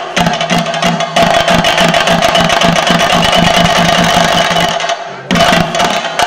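Theyyam percussion accompaniment: fast, dense chenda drum strokes with a steady ringing tone over them. The playing breaks off briefly about five seconds in, then resumes.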